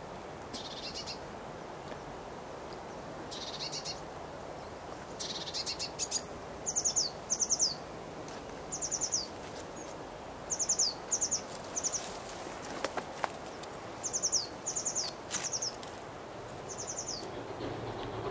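A small songbird calling from nearby foliage: about a dozen short, high, fast runs of falling notes, some coming in quick succession of two or three.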